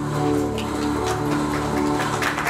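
Live keyboard accompaniment playing slow, held chords, one chord giving way to the next every half second or so.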